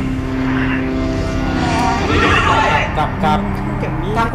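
Voices talking, several at once, over a steady background music bed; the talk is densest in the second half.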